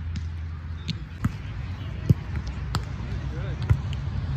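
A volleyball being struck by players' hands in a grass doubles game: a few sharp slaps, the loudest about two seconds in and another near the end, over a steady low rumble.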